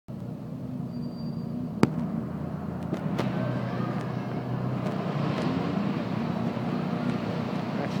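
Steady hum of road traffic with faint distant voices, and a single sharp click a little under two seconds in.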